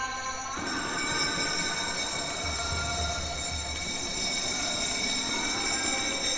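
Temple arati bells and cymbals ringing steadily between sung lines of the kirtan, with a few low drum thumps a little past halfway.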